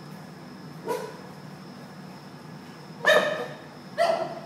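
A Basenji shut in a wire crate calling out in short barks: a brief one about a second in and a louder, longer one near the end. It is protesting at being left alone in the crate.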